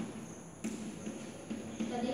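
Chalk tapping and scratching on a chalkboard as a word is written, with sharp taps about two-thirds of a second in and again near the end.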